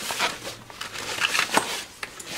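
Fabric carrying bag rustling and coiled cables shifting as they are handled and rummaged through, with a few light knocks.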